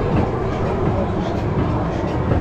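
Kiddie caterpillar train ride running round its circular track, heard from aboard: a steady rumble of the cars' wheels and drive.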